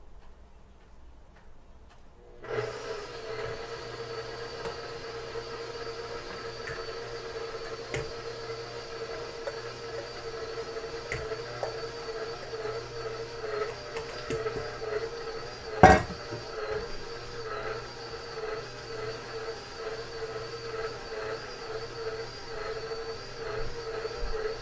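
Electric stand mixer starting up about two seconds in and then running steadily, its motor hum wavering slightly in pitch as the dough hook works a stiff bread dough of flour, yeast, sugar, water and salt. A single sharp knock cuts through about two-thirds of the way in.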